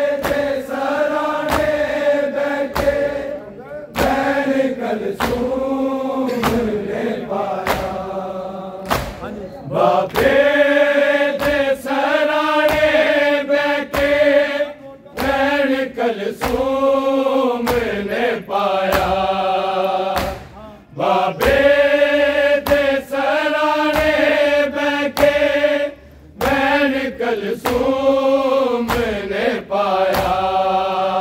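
A Punjabi noha sung by men, a lead reciter with a chorus of mourners joining in, over a steady beat of sharp hand strikes on bare chests (matam), about one a second.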